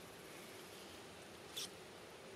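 A single short, high squeak about one and a half seconds in, over a faint steady background.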